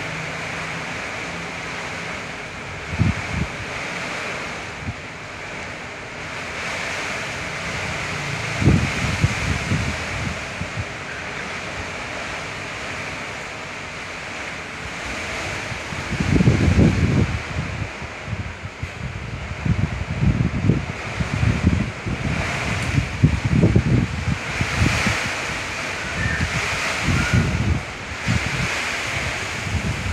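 A steady hiss, with irregular low bumps of handling noise on the recording device's microphone, dense in the second half as the camera is moved about.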